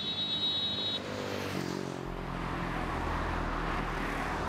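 Road traffic: a steady wash of passing vehicles, with a low drone from the score coming in about halfway.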